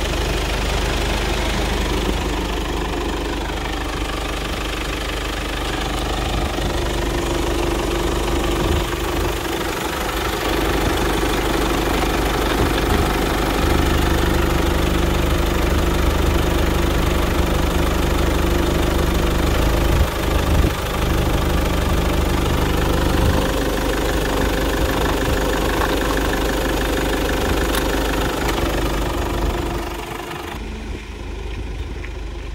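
Kia Sportage 2.0 VGT turbodiesel four-cylinder engine idling steadily, heard close up with the bonnet open.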